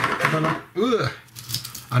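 A man speaking German in short, broken phrases with brief pauses; no other sound stands out.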